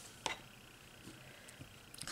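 Quiet room tone with one sharp, short click about a quarter second in and a couple of faint ticks later: nail-stamping tools, a jelly stamper and a metal stamping plate, being handled.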